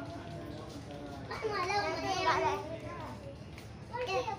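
A child's high voice calling out for about a second and a half in the middle, over other voices and a low steady rumble.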